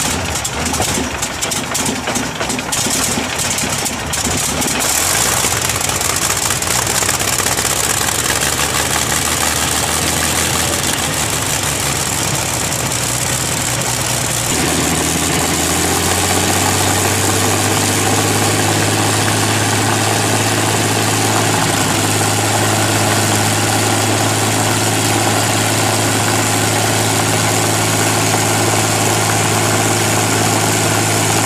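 A Rolls-Royce Merlin supercharged V12 aero engine running on a test stand with its propeller turning, at an uneven idle. About halfway through, its note becomes steadier and a little louder.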